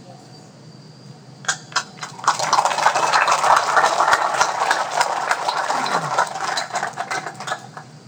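A crowd applauding: a few scattered claps start about a second and a half in, swell into full applause, and die away just before the end.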